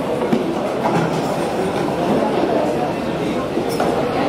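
Steady chatter of many people talking at once in a crowded room, with no single voice standing out. A brief click sounds near the end.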